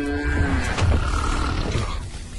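A big cat growling: a cheetah sound effect, with low rough pulses. A held musical chord fades out about half a second in.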